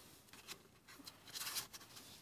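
Faint handling sounds: small acrylic and glittery foam embellishments and a paper card being moved in the hands, with a couple of soft scratchy rustles.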